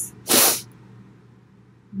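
A woman takes one short, sharp breath close to the microphone, a burst of breathy hiss about a third of a second long, just after the start. After it there is only faint room tone.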